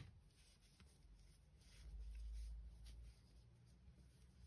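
Near silence: faint rubbing and a few soft ticks of a crochet hook being worked through yarn, with a small click at the start and a soft low rumble around the middle.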